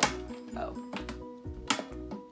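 Two sharp metallic clicks about a second and a half apart, from the push-button lid of a small metal trash can being pressed. The lid is stuck and does not open. Background music plays throughout.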